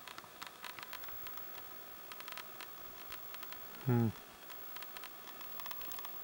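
Faint handling noise from a handheld camera: irregular small clicks and rustle over a quiet hiss.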